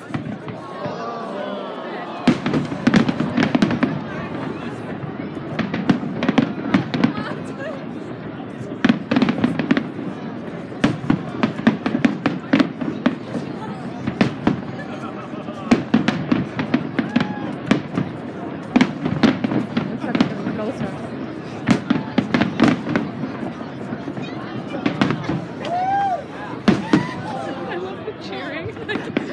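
Fireworks display: aerial shells bursting with sharp bangs and crackling, in dense volleys every few seconds.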